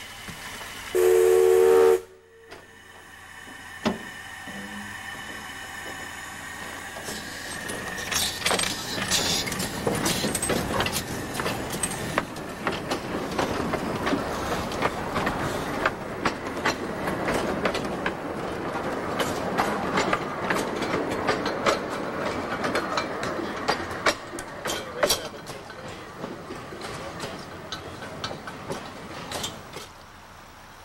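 A steam locomotive's whistle blows one short blast about a second in, the loudest sound here. After a break, a narrow-gauge steam train runs along the track, its wheels rattling and clicking over the rails. A thin steady high tone fades out early in the running.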